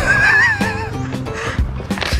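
A horse whinny, one wavering high call lasting about a second at the start, laid over background music as a comic sound effect.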